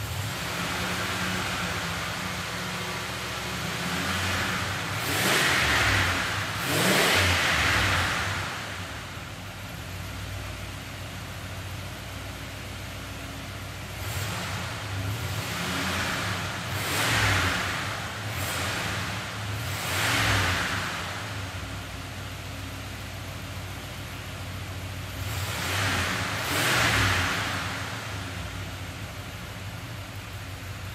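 The turbocharged 350 cu in LM1 V8 of a 1981 Chevrolet Camaro Yenko Turbo Z idles through its dual exhaust and is revved in short blips, in three groups: two about five seconds in, four in the middle, and two near the end.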